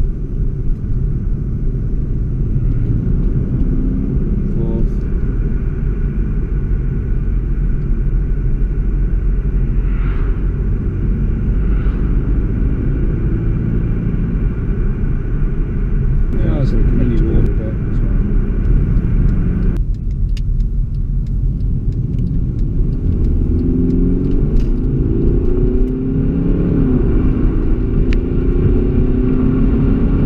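Mercedes E250 heard from inside the moving car: a steady engine and road rumble, with the engine note rising several times in the second half as it accelerates through the gears of its 7G-Tronic Plus automatic.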